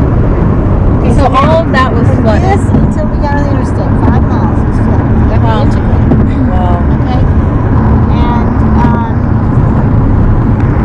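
Road and engine noise inside a car's cabin while it drives at highway speed, a steady low rumble, with indistinct talking from the passengers over it.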